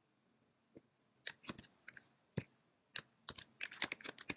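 Computer keyboard and mouse clicks: quiet for about a second, then a string of separate sharp clicks that come quicker near the end as typing starts.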